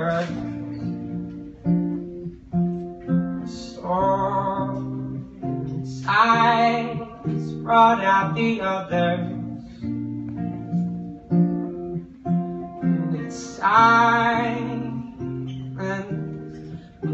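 Solo acoustic guitar played with a man singing over it. The singing comes in several phrases, with stretches of guitar alone between them.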